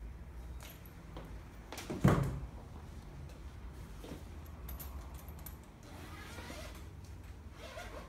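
Bugaboo Cameleon3 stroller canopy being extended by hand: one loud clunk about two seconds in, then lighter clicks and rustling of the hood.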